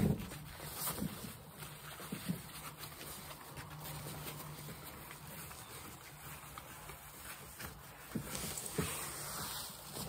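Reflective foil sleeping mat being unrolled and smoothed by hand on a fabric camping cot: soft crinkling and rustling, with a few brief handling knocks.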